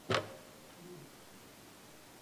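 The last short syllable of a man's speech right at the start, then quiet room tone with a faint voice-like murmur about a second in.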